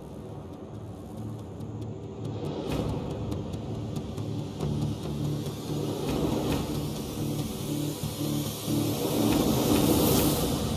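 Engines of a group of motorcycles running under music, with a regular pulsing beat coming in about halfway through.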